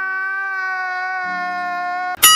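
A comedic meme sound effect of a man's crying wail, one long high-pitched note held steady, with a quieter lower tone joining about halfway through.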